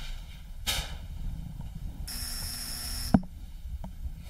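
A doorbell buzzer sounds for about a second and cuts off with a sharp click, after a brief rustle of movement.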